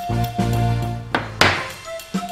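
Background music with a steady bass line, over which a steel bearing-housing plate is set down on the workbench: two thunks close together about a second in, the second louder.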